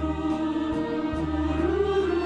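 Background music: a choir singing long held notes over a steady low accompaniment, one note rising slightly near the end.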